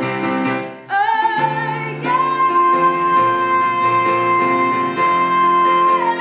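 A woman singing a musical-theatre song with piano accompaniment. After a brief break just before a second in, she holds one long high note from about two seconds in.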